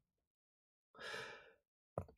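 A single breath of about half a second taken by a man between sentences, about a second in; otherwise near silence.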